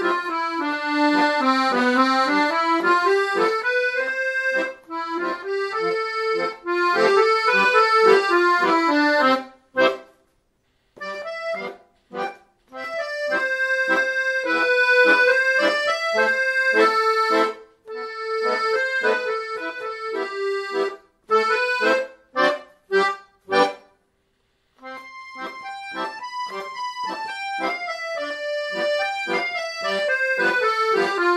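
Piano accordion playing a melody over chords. The playing stops briefly twice, then breaks into a run of short detached chords and a pause of about a second before it resumes.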